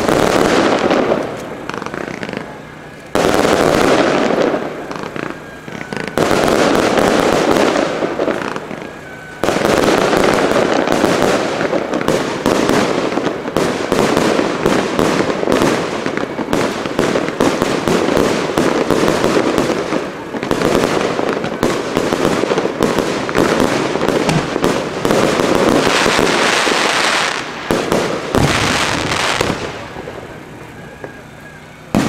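Aerial firework shells bursting one on top of another in a dense, continuous crackle of bangs, with sudden louder volleys about three and nine seconds in, thinning out near the end.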